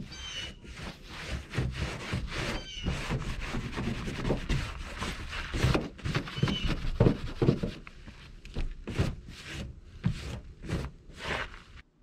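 Irregular rubbing and scrubbing strokes against a school bus's painted sheet-metal body, with a few short rubbery squeaks, as leftover sticker adhesive is worked off.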